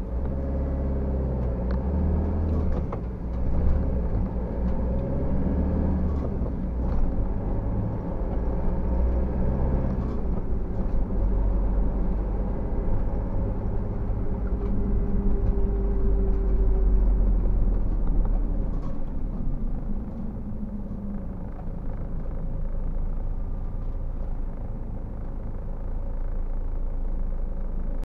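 Car engine and road rumble heard from inside the cabin as the car drives on a city street. The engine note changes several times in the first ten seconds as it gathers speed, then settles into a steady drone.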